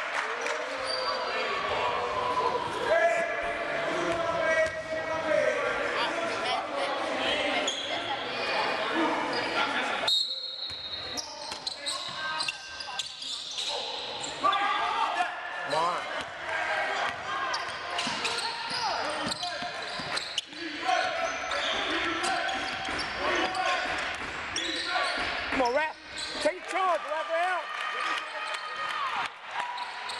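A basketball game in a gym: a ball dribbling on the hardwood floor, sneakers squeaking, and indistinct shouts from players and onlookers, all echoing in the large hall.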